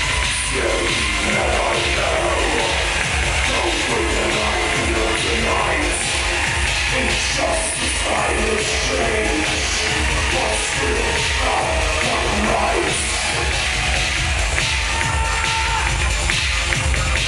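Loud amplified live music with a steady, heavy bass, heard through a venue's sound system from the audience.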